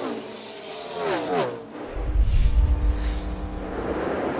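A NASCAR stock car's V8 passing with a falling engine note in the first second and a half. Then, about two seconds in, a deep bass hit and whoosh with held synth tones: a broadcast transition stinger.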